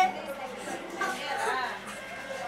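Speech only: a person's voice talking quietly.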